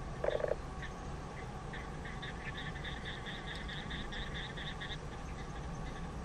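Outdoor animal calls: a short low croak about a quarter second in, then a quick run of high chirps, about five a second, from about two to five seconds in.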